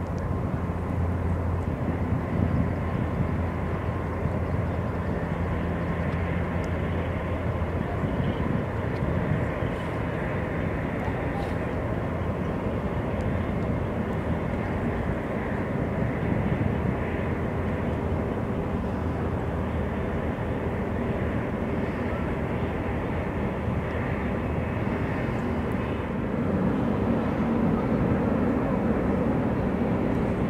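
Jet airliner engines running steadily as a twin-engine widebody moves along the runway, a continuous noise with a low hum underneath. The sound grows slightly louder in the last few seconds.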